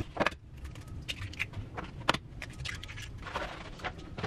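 Scattered light clicks, knocks and clinks of kitchen items and food containers being handled, picked up and set down, with the sharpest knocks about a quarter second in and about two seconds in.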